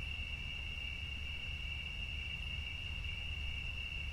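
Crickets trilling in one steady, unbroken high-pitched tone over a low background rumble.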